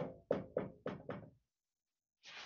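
Dry-erase marker striking a whiteboard as it writes: about five quick, sharp knocks in the first second and a half, each ringing briefly.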